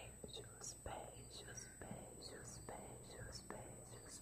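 A woman whispering close to the microphone: soft, breathy whispered speech with short sibilant hisses.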